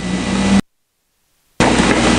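Steady background hiss with a low hum from the recording, cut off abruptly about half a second in by about a second of dead silence, then back just as suddenly: an audio dropout at a slide change.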